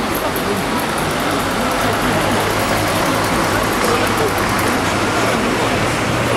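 Steady street traffic noise, with the voices of people talking nearby mixed in; a low steady hum comes in about two seconds in.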